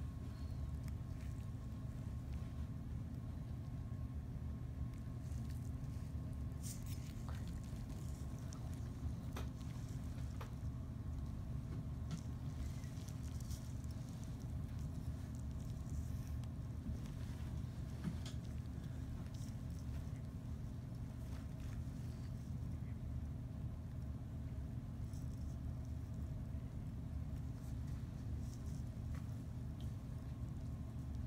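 Steady low background hum, with a few faint scattered clicks.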